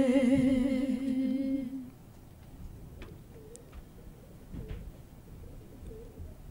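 Women's voices holding a long closing note of a hymn with a wavering vibrato, unaccompanied, which ends about two seconds in; then quiet room tone with a few faint clicks.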